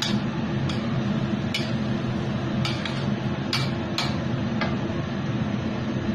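A spatula clicking and scraping against a stainless steel wok during stir-frying, about eight sharp, irregular strikes over a steady background hum.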